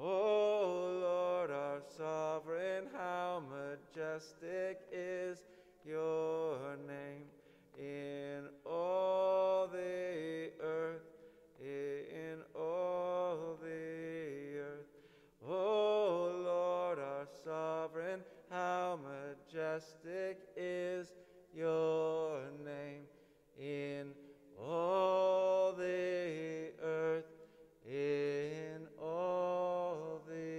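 A short chant-like refrain sung again and again, in phrases a few seconds long with brief breaks between them, over acoustic guitar.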